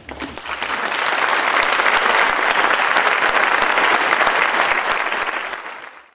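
Audience applauding: the clapping builds up over the first second, holds steady, and dies away near the end.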